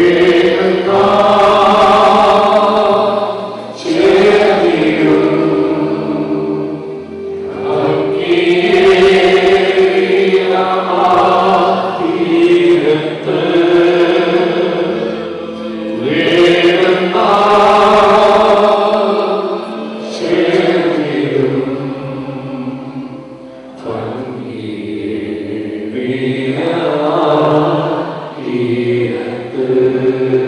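A group of voices singing a slow hymn together in long held phrases, each lasting a few seconds, with brief dips between them.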